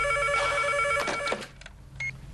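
Telephone ringing with a fast-trilling electronic ring that cuts off about a second and a half in, as it is picked up.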